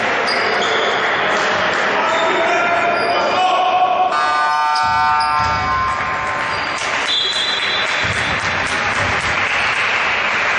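A basketball being bounced on a wooden gym court during a game, with players' voices in the echoing hall; a brief steady tone sounds about four seconds in.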